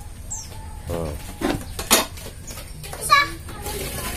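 Children's voices calling out in short bursts, with a single sharp knock a little before the middle.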